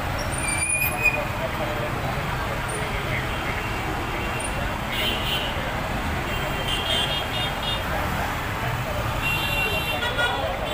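Street ambience of a busy city road crowded with auto-rickshaws and motorcycles: steady traffic noise under a hubbub of many voices. Short horn beeps come about five, seven and nine seconds in, and there is one sharp knock about a second in.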